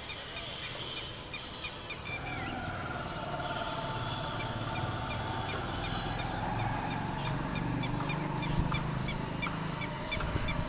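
Small birds chirping: many short, high calls repeating throughout. A low hum rises under them from about two seconds in.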